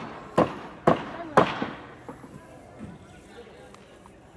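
Four sharp bangs about half a second apart, each trailing off in a short echo, followed by faint voices.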